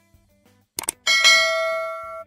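Subscribe-button animation sound effect: a quick double click a little under a second in, then a notification bell chime that rings out and fades over about a second.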